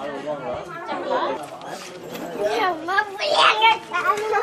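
A group of people talking at once, adults and children, with a higher, louder voice rising above the rest about three seconds in.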